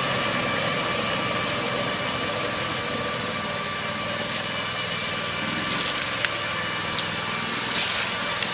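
Mudd Ox Ven38 amphibious tracked ATV running steadily as it drives on Adair tracks through a flooded swamp trail. From about halfway in come a few sharp snaps of brush and branches as it pushes through the undergrowth.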